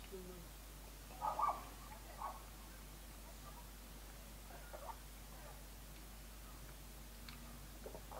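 Quiet mouth sounds of a man sipping and tasting neat bourbon: a short sip-and-swallow about a second in, then a few faint mouth smacks and clicks as he holds it on the palate.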